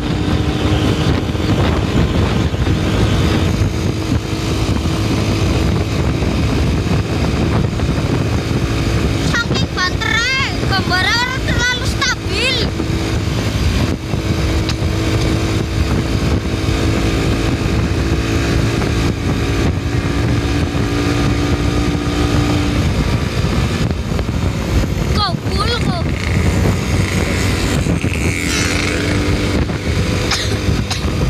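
Vehicle engine running steadily under wind and road noise while driving fast, with a steady engine tone through most of it. Warbling pitched sounds come in about ten seconds in and again near the end.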